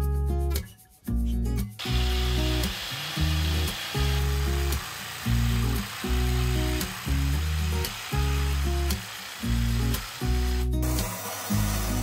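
Background music with a steady repeating bass line, over which a jigsaw cuts through a thin wooden board with a buzzing rasp from about 2 s in until about 11 s. Near the end a steadier machine noise takes over as a bandsaw runs.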